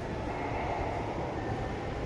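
Steady ambient rumble and hiss of a large airport terminal hall, even throughout with no distinct events.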